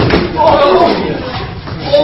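A hard thud of an impact, then loud voices crying out.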